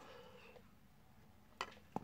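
Near silence, broken by two short clicks about a second and a half in and again near the end, from 1986 Topps cardboard hockey cards being handled.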